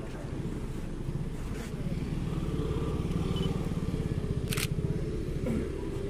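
An engine running steadily with a low, fast-pulsing rumble that grows a little louder about two seconds in, with one sharp click about two-thirds of the way through.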